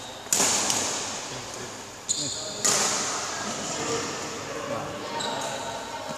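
Badminton rackets striking a shuttlecock: sharp cracks that ring out in a large hall. The two loudest come about a third of a second in and about two and a half seconds in, with a smaller hit between them.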